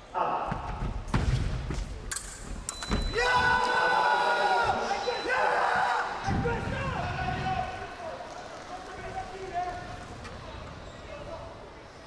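Several sharp thuds in a large sports hall, then a loud drawn-out voice-like shout for a few seconds, and quieter voices in the hall after it.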